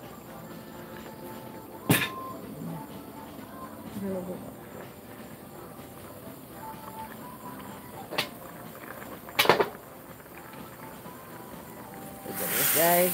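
Sharp knocks over a steady background hiss: one about two seconds in, another about eight seconds in, and a quick double knock about a second and a half later.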